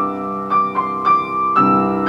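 Grand piano played: a held low chord under a high melody of single notes struck about twice a second, with the low chord struck again near the end.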